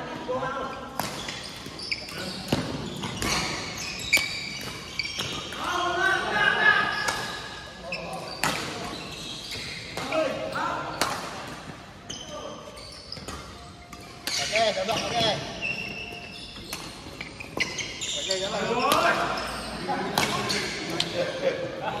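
Badminton rally in a large echoing hall: repeated sharp cracks of rackets striking a shuttlecock, mixed with players' voices calling out.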